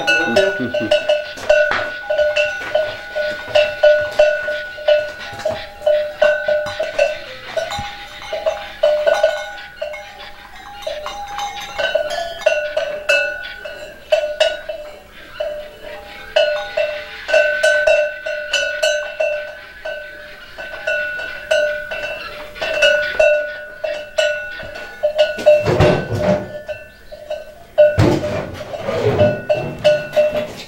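A metal cowbell on a cow's neck clanking irregularly as the animal moves, ringing at the same pitch each time, with occasional knocks among the strokes.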